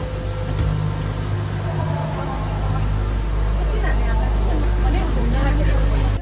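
Low, steady mechanical rumble of the Hakone Ropeway's gondola and station machinery, heard from inside the cabin as it moves out of the station, growing louder toward the end. Passengers' voices are heard over it.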